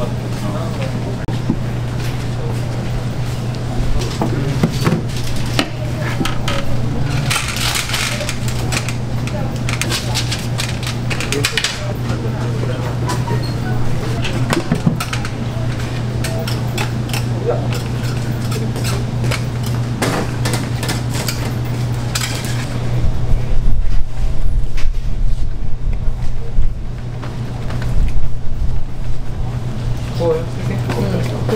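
Commercial kitchen ambience at a waffle counter: a steady low hum, with bursts of metal clatter from utensils and waffle irons and faint background voices. Louder knocking and handling noise come in the last several seconds.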